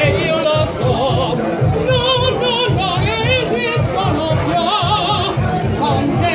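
A man singing with a deep, fast vibrato in an operatic style, over music with a pulsing bass.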